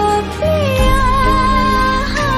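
A Hindi film song plays, with a singer holding one long, slightly wavering note over steady instrumental backing.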